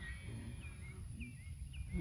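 Faint bird calls: a short chirping note repeated about every half second, over low background noise.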